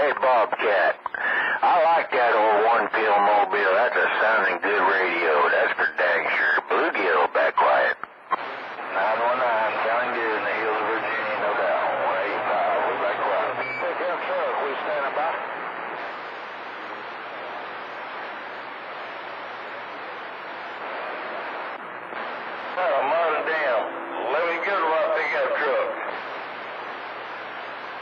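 A CB radio receiving long-distance skip on channel 28: narrow-band voices come through static and hiss, rising and fading. The voices are strong at first, cut out for a moment, then come back weaker under the static. Mostly static takes over through the middle, and a voice returns near the end.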